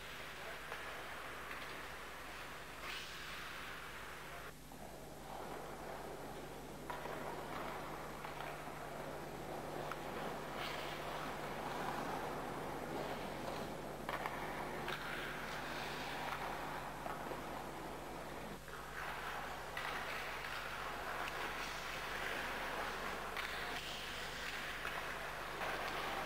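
Rink sound of ice skates scraping and carving on the ice during a hockey stickhandling demonstration, a rough hissing noise that swells and changes every few seconds, over a steady low hum.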